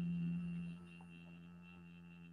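Singing bowl ringing: a steady low tone with a high, wavering overtone. The tone drops in level a little under a second in, then keeps ringing softly as it fades.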